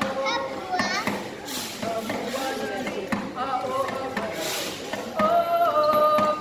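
Ukulele band strumming and singing a Hawaiian song, with children's voices chattering over the music.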